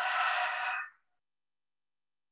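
A person's voice over a video-call link, a drawn-out sound that cuts off suddenly about a second in, followed by silence.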